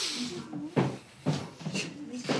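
Soft murmured voices with short breathy and rustling noises as two people hug in greeting.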